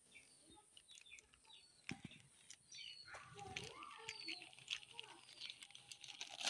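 Near silence: faint background with a distant voice and a few short bird chirps, plus light scattered ticks.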